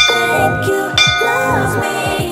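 Background pop music with a bell-like chime struck about once a second, ringing on: a countdown chime before the next exercise starts.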